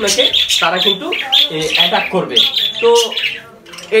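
Pet parrots squawking, a rapid series of short, high-pitched calls, with a brief lull near the end.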